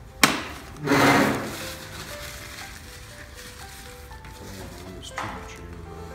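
Background music with held notes, joined by a sharp click just after the start and a loud, short rushing noise about a second in, with a smaller one near the end.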